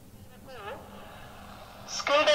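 A brief, faint voice sound about half a second in, its pitch dipping and rising, over low room noise.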